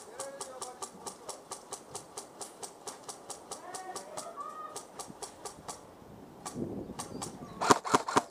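Airsoft guns firing a steady, rapid string of shots, about five or six a second, that stops about five and a half seconds in, with distant voices calling. Near the end come a handling clatter and two loud, sharp close-by shots.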